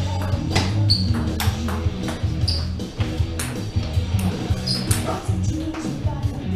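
Background music plays throughout. Over it come a handful of sharp clicks with a short ping, spaced irregularly a second or more apart: a 44 mm Nittaku 3-star table tennis ball striking paddles and the table during a rally.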